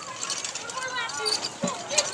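Background voices of people talking and calling out, with one sharp click near the end.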